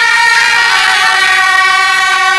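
A procession band of suona (Chinese shawms) playing loud, held reedy notes in several parts at once.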